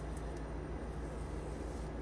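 Steady low background hum with no distinct events: room tone.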